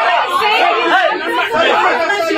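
Speech: a man talking, with other voices talking over him at the same time.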